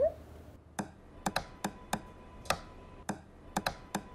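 Computer keys clicking: about ten sharp, irregularly spaced clicks.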